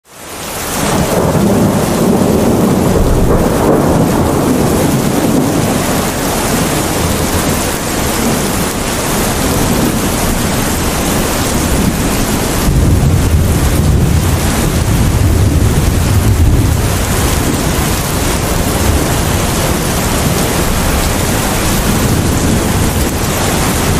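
Steady heavy rain with rolling thunder, fading in at the start; the thunder rumbles deepest a couple of seconds in and again around thirteen to seventeen seconds in.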